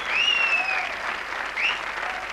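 Studio audience applauding, with a high, slightly falling whistle from the crowd early on and a short rising one near the end.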